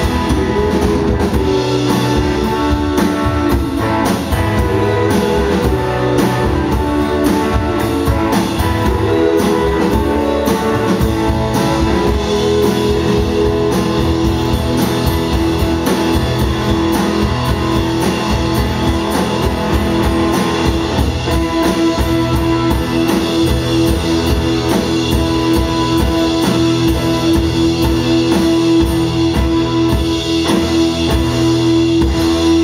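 Live rock band playing: acoustic and electric guitars over a drum kit. A long steady held note comes in about two-thirds of the way through and sustains to the end.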